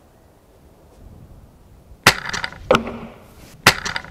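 An 860 lb windlass crossbow shooting: a sharp crack of release about two seconds in, ringing briefly, then about a second and a half later a sharp knock of the bolt striking the wooden target, which the shooter thinks hit a big bit of timber in it.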